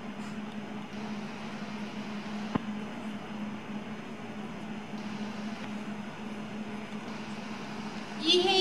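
Steady low hum of an indoor ice rink with the hiss of figure skate blades gliding and turning on the ice, and one sharp click a little over two seconds in.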